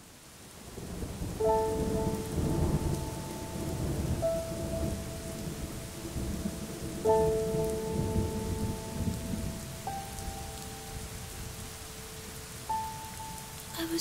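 Rain and low rumbling thunder fading in over the first second or so, under soft held keyboard chords that change every few seconds.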